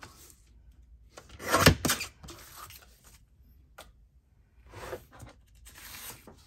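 Sliding paper trimmer: the blade is drawn along its rail and cuts through a sheet of paper in one stroke of about half a second, about a second and a half in. Softer paper rustling and a single click follow as the sheet is handled.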